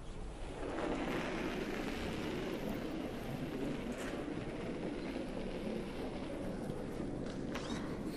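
Granite curling stone and the thrower's slider gliding over pebbled ice during a delivery: a steady sliding noise that starts about a second in and carries on as the stone travels down the sheet. A few sharp ticks come near the end.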